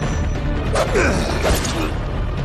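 Sound effects of a staged sword fight: two short sounds that slide down in pitch, about a second in and near the end, over a steady low rumble and a faint score.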